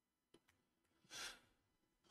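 Near silence with one faint, short exhale from a man, a little past the middle.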